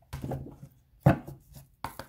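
A deck of cards being handled and knocked against a table: a few short knocks and rustles, the sharpest about a second in and another near the end.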